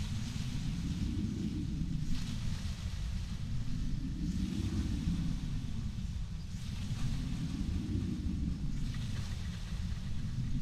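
A deep, dark drone that swells and ebbs slowly, about every three seconds, with a faint hiss rising and falling above it: an ambient horror soundscape.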